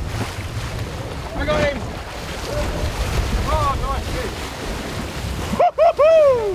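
Wind buffeting the microphone over the sea and the boat's low rumble, with faint distant calls. Near the end a loud yell rings out, its pitch falling away, as the hooked fish jumps clear beside the boat.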